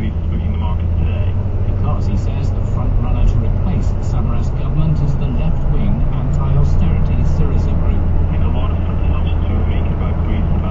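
Car interior driving noise: a steady low engine and road-tyre drone at slow city speed, heard from inside the cabin, with indistinct voices in the background.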